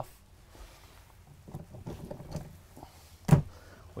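Quiet handling and movement sounds, faint scattered taps and rustling, with one sharp knock a little over three seconds in.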